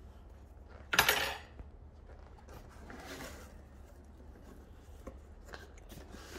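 A cardboard product box's seal tearing as its lid is pulled open, a short rip about a second in, followed by faint rustling of the cardboard.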